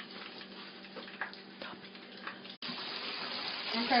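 Fish frying in a shallow pan of vegetable oil: a steady sizzle, faint at first, then louder after a brief dropout about two and a half seconds in.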